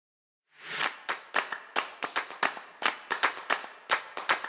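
Pesto ingredients dropping into the food processor's clear plastic work bowl: a quick, irregular run of sharp clicks over a soft hiss, starting about half a second in.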